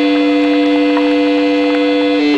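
Loud sustained drone from a live rock band's amplified instruments: a strong steady low note, with one or two further notes held level above it.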